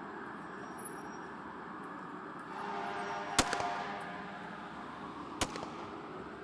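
Steady outdoor night ambience with a low hiss, with two sharp cracks about two seconds apart, the first a little past the middle.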